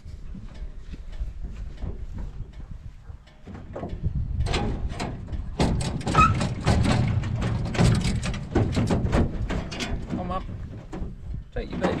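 Sheep hooves clattering and scrabbling on the metal mesh floor of a stock crate, with the metal gate and rails rattling. The clatter starts about three seconds in and gets busier from about six seconds.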